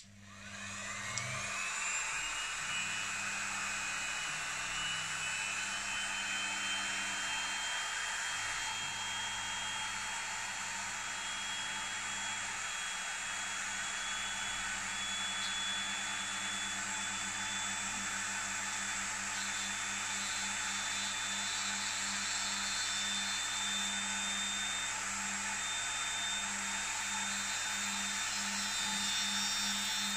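A handheld rotary tool switches on, its whine rising in pitch over the first two seconds, then runs steadily at high speed with a small abrasive wheel fitted, used to grind and finish a fountain pen nib.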